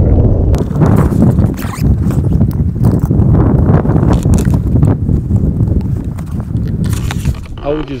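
Wind buffeting an action camera's microphone as a steady low rumble, with scattered knocks and clicks from camera gear being handled.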